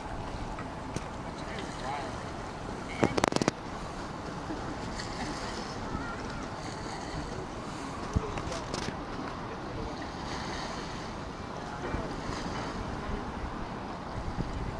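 Outdoor waterside ambience, mostly wind buffeting the microphone, with faint distant voices. A quick cluster of sharp clicks about three seconds in is the loudest sound, and there are a few more clicks about halfway through.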